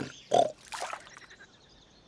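Cartoon wild boar grunting twice in the first second, a short louder grunt and then a softer one.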